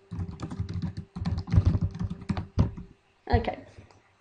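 Computer keyboard typing: a quick run of keystrokes entering a short phrase, which stops about three seconds in. A faint steady hum sits underneath.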